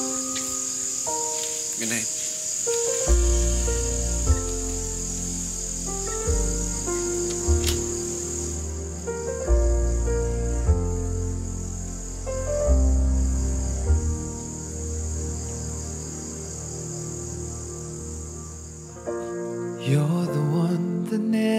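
Crickets chirping steadily as night ambience, under soft background score music whose deep bass notes come in about three seconds in.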